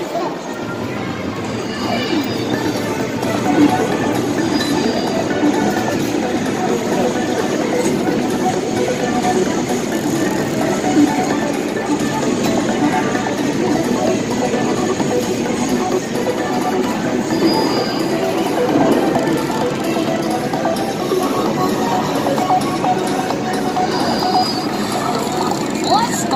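Busy arcade din: many people talking at once mixed with music and electronic sounds from the game machines.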